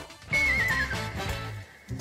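A horse whinny sound effect: one wavering call that falls in pitch, over steady background music.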